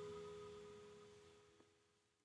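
The last held notes of a soul song's final chord fading out into near silence, with a faint click about one and a half seconds in.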